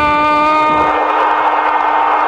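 Channel intro sting: a long shouted note held at one steady pitch, with a crowd roar swelling in under it about two-thirds of a second in.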